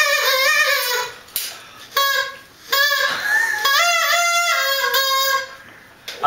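A man singing a vocal take into a studio microphone, in sung phrases with short pauses between them and no audible backing music.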